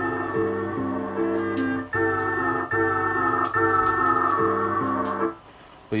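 Sustained sampled chords played from an Akai S2000 sampler, changing a few times, while the data wheel raises the low-pass filter's resonance, so a bright ringing band wavers over the notes. The sound cuts off about five seconds in.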